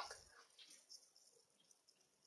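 Near silence: room tone, with the last of a voice trailing off at the very start.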